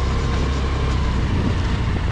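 Motor scooter running at low speed as it is ridden, with a steady low rumble.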